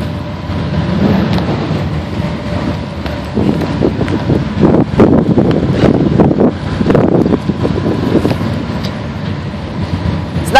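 Several motorcycles running together, their engine noise loud throughout and heaviest in the middle few seconds, with wind buffeting the microphone.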